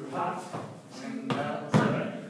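Brief untranscribed speech from the dancers, with two sharp thuds about a second and a half in, from dance shoes landing on a hardwood floor.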